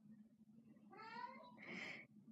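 Domestic cat giving a single faint meow about a second in, rising in pitch, over quiet room tone.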